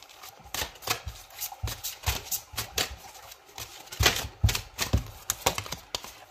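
A deck of cards being shuffled by hand: an irregular run of quick flicks and taps, thickest about two thirds of the way through.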